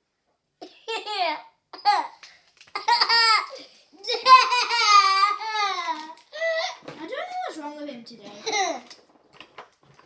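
A young boy laughing and squealing in a string of short high-pitched bursts, the longest and loudest in the middle.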